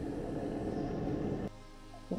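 Background music of sustained low tones that drops to a quieter level about one and a half seconds in.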